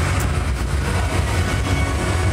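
Muffled sound of a live concert performance on the stage directly overhead, heard from underneath through the stage structure: a loud, steady low rumble with no distinct notes.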